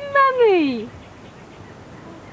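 An infant's fussing wail: one drawn-out vocal cry in the first second, falling steadily in pitch, then quiet background.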